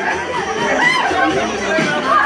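Excited party crowd, many people talking and calling out over one another at once.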